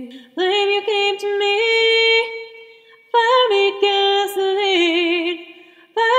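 A cappella female vocals in layered harmony, several voices holding chords together. They come in two phrases, the first starting about half a second in and the second about three seconds in, each fading away at its end.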